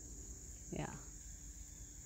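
Faint, steady, high-pitched chorus of insects droning without a break.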